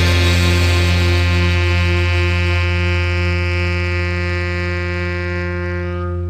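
A live band's closing chord held and ringing out through the amplifiers after the final hit: a steady low note with higher tones above, one of them wavering, slowly fading.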